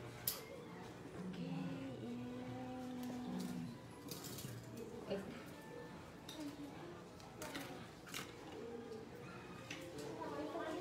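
Metal hair-cutting scissors and thinning shears clinking against each other and the tray as they are handled, a few sharp clicks scattered through, over faint background voices and music.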